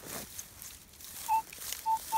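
Metal detector giving two short, steady mid-pitched beeps as its coil is swept over a coin target, a signal the detectorist reads as a penny.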